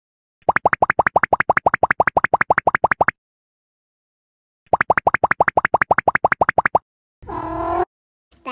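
Cartoon-style 'bloop' sound effect: rapid, evenly spaced rising pips, about eight a second, in two runs of roughly two and a half and two seconds with silence between. A short pitched sound with a few harmonics follows near the end.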